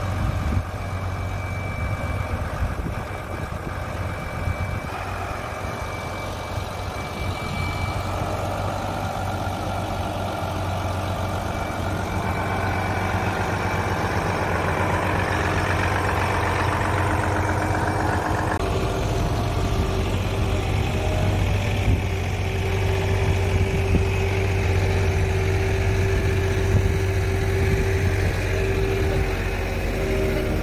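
Diesel engine of a Volvo FM crane truck running steadily at idle while it powers the truck-mounted knuckle-boom crane lifting a septic tank. A higher noise over the engine's low hum shifts about two-thirds of the way through into a steady higher hum as the crane works.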